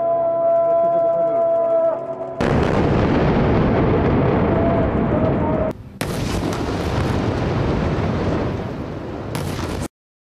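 A single long held note for about two seconds, then an explosion that starts suddenly and rolls on as a loud roar for about three seconds. About six seconds in, a second air-strike explosion on a high-rise tower starts as sharply and roars on until the sound cuts off abruptly just before the end.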